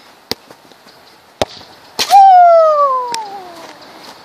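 A football struck with a sharp thud about halfway through, followed at once by a boy's long cry that falls in pitch and fades over nearly two seconds. Two lighter taps of the ball come before the kick.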